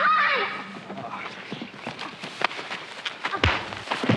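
A woman's cry trails off at the start, then a horse's hooves knock irregularly on the ground, with a heavy thud about three and a half seconds in.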